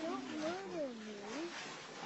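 A single drawn-out vocal call, about a second and a half long, whose pitch glides up, down and up again.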